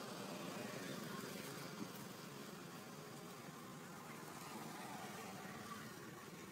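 Faint, steady outdoor background noise with a single soft click about two seconds in.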